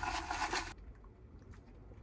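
Faint steady hiss that cuts off abruptly under a second in, leaving near silence with a few faint ticks.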